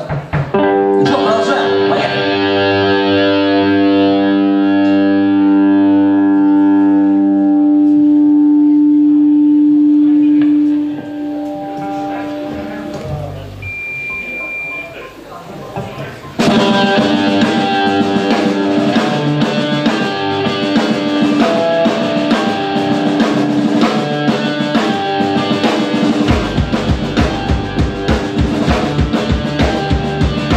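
Ska-punk band playing live: a long held chord rings until about eleven seconds in, followed by a quieter stretch. About sixteen seconds in, electric guitars, bass and drums come in together, with a steady kick-drum beat from about twenty-six seconds.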